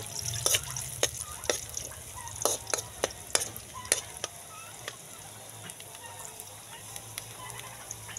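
Chopped garlic sizzling in hot cooking oil in a steel wok while a metal spoon stirs it, scraping and clicking against the pan. The clicks are frequent for the first few seconds, then thin out, leaving mostly the sizzle.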